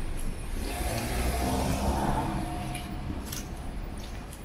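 A car driving past close by, its engine and tyre noise swelling to a peak about halfway through and then fading away.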